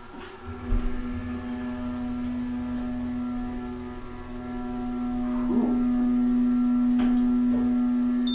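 Vintage elevator's motor humming as the cab rises, a steady low tone with overtones that starts about half a second in and grows louder around the middle, over a low rumble. A faint click comes near the end.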